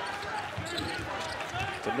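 A basketball being dribbled on a hardwood court, short sharp bounces over the steady background noise of an arena crowd.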